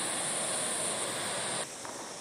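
Steady outdoor background noise of distant ocean surf and wind, with a thin, constant high hiss over it. It drops suddenly to a quieter level near the end.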